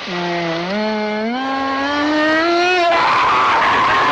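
A man's long, drawn-out howl that starts low and rises in pitch in steps. About three seconds in, a louder noisy swell with a held high note takes over.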